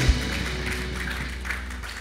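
A live band's final chord ringing out and slowly fading after the drum beat stops, with a held low note underneath.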